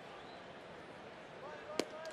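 Ballpark crowd murmuring, then near the end a single sharp pop as the pitched baseball smacks into the catcher's mitt on a swing and a miss.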